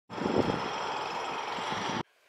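Steady outdoor background noise, an even hiss with a faint low rumble, that cuts off suddenly at the end.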